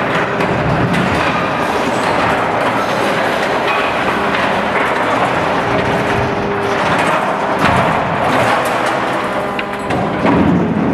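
A hydraulic concrete crusher on a demolition excavator chewing into a reinforced concrete slab: crunching and cracking concrete and scraping rebar over the steady running of the machine's engine and hydraulics.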